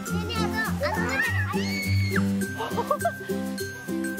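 Background music with a steady, repeating beat, and a young child's high-pitched voice calling out over it in the first three seconds.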